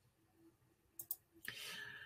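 Two faint, quick clicks about a second in, followed by a soft hiss near the end.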